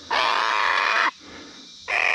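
Young sulphur-crested cockatoo, just out of the nest and held in the hand, screeching in distress: two long harsh screeches about a second each, the second starting near the end.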